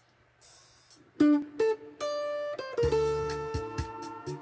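Electric guitar coming in about a second in with slow, sustained melody notes, over a backing track whose regular high ticks are heard first and whose low accompaniment joins near three seconds in.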